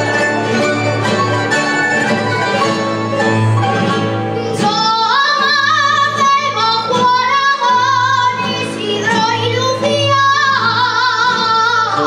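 Aragonese jota played by a rondalla of guitars and other plucked strings. About four and a half seconds in, a high woman's voice comes in, singing the jota verse with a strong wavering vibrato over the strings.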